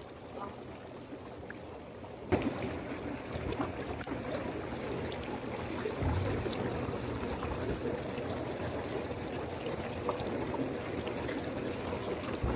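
Inflatable hot tub's air-bubble jets churning the water, a steady bubbling hiss that gets louder about two seconds in.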